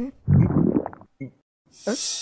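A short, low gurgling rumble lasting under a second, then a cartoon character's voice rising near the end.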